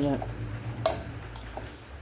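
Broccoli salad being mixed in a glass bowl, with a sharp click a little under a second in and a fainter one about half a second later, over a low steady hum.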